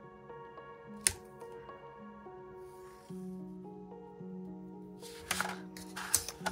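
Soft background music with steady held notes. A sharp click sounds about a second in, and near the end comes a rustle of cardstock being handled as the ruler is moved aside.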